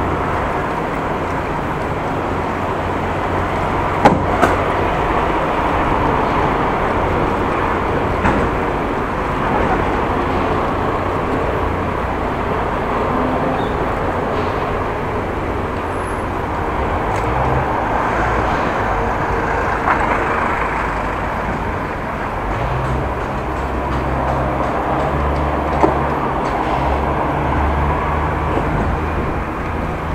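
Steady city street and traffic noise picked up from a moving bicycle, with a constant low rumble. A couple of sharp clicks stand out, one about four seconds in and another near the end.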